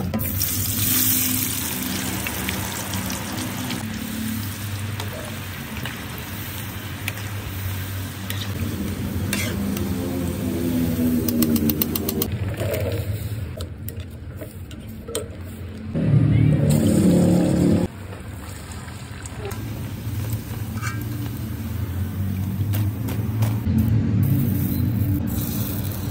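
Kitchen cooking sounds cut together in several abrupt edits: potato wedges tossed in a plastic bowl, then green beans and carrots stirred and sizzling in a frying pan, and eggs starting to fry, over background music.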